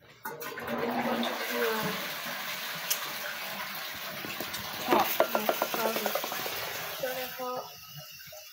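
Bathroom tap running into a sink, starting abruptly and shutting off near the end, with a few sharp clicks about five seconds in.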